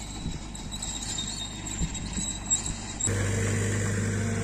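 Tracked excavator working across the site: a low engine rumble with a few soft knocks. About three seconds in, a steady low hum starts suddenly and is louder than the rumble.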